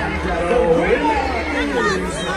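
Several voices talking over one another in a seated audience, close to the microphone.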